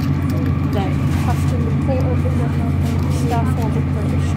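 Steady low drone of a Class 156 Super Sprinter diesel multiple unit running, heard inside the passenger saloon from its underfloor diesel engine and running gear. Faint voices can be heard over it.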